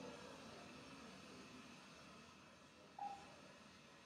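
Near silence: quiet room tone, with one short electronic beep about three seconds in.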